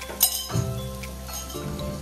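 A sharp metal clink about a quarter second in, from a utensil against the aluminium wok of frying noodles, followed by background music with sustained tones.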